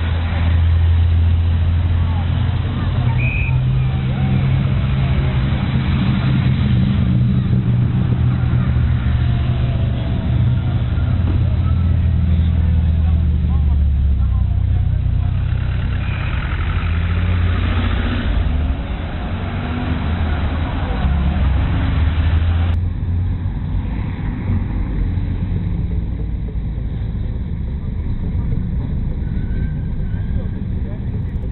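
Classic rally cars' engines running as the cars pull away slowly, a steady low engine drone, with bystanders talking. The sound changes abruptly about two-thirds of the way through.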